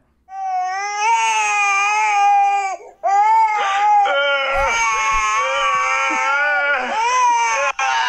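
A baby wailing loudly in long, high cries, with a short break about three seconds in, played from a TikTok clip. From about halfway a lower adult voice is heard alongside the crying.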